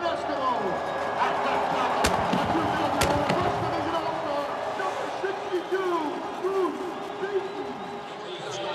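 Stadium crowd cheering and shouting, many voices overlapping and swelling, with two sharp thumps about two and three seconds in.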